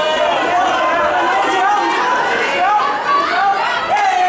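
Fight crowd shouting and calling out over one another, many voices at once and none clearly made out.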